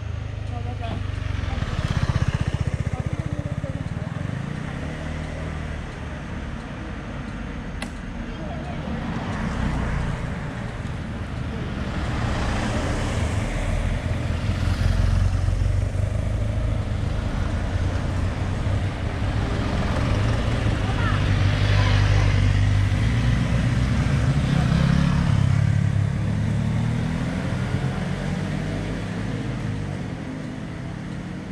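Road vehicle engines running on a mountain road, the sound swelling and fading twice, around the middle and again in the second half, as of vehicles passing.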